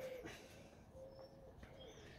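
Near silence, with a faint, short bird call about a second in.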